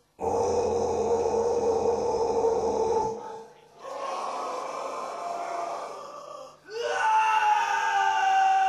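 Live heavy-metal vocal shouts and growls through a PA in three long phrases. The last is a held yell that falls in pitch near the end, with crowd noise underneath.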